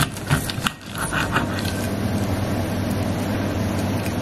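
A table knife sawing through the crisp pork-rind and parmesan crust of a pork chop on a ceramic plate, with short crackly scrapes and clicks in the first second or so. After that a steady low machine hum with a hiss fills the rest.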